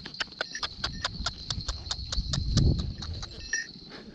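A fast, even run of sharp clicks, about seven a second, while a horse is ridden at a walk, with a low rumble near the middle. The clicks stop about half a second before the end.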